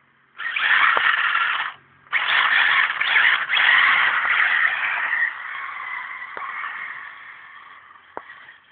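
A buggy's tyres skidding and scrabbling on loose ground, a harsh scraping noise with no clear engine note. A short burst comes about half a second in, then a longer one starts about two seconds in and slowly fades away.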